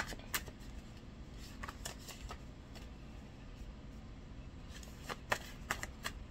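Paper reading cards handled and shuffled by hand: a sharp snap right at the start, a few light flicks around two seconds in, then a cluster of snaps and riffles near the end, with a quiet stretch between.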